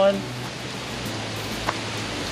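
A single short click about a second and a half in, a plastic strap connector of a Leatt Dual Axis knee and shin guard being snapped shut, over a steady hiss.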